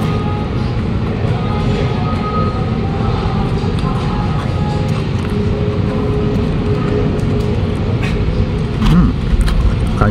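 Steady low din of a busy indoor station hall, with faint background music and a brief murmur of a voice near the end.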